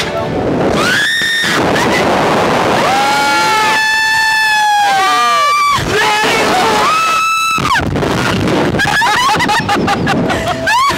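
Two riders screaming and yelling as a slingshot reverse-bungee ride flings them, with long held screams about a second in, a longer one from about three seconds, and another near seven seconds.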